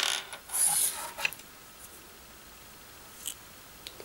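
Small metal nozzle parts of a Kärcher Dirt Blaster lance being handled and fitted by hand: a brief scrape and a few light clicks in the first second or so, then two faint ticks near the end.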